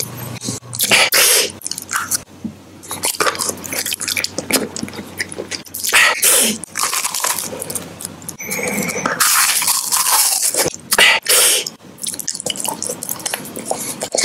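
Close-miked mouth sounds of biting and crunching wrapped snack bars, including a Bourbon Elise white-cream wafer stick, with plastic packaging crinkling. The sound comes as a series of separate sharp crunches and crackles, with one longer rustling crinkle about two-thirds of the way through.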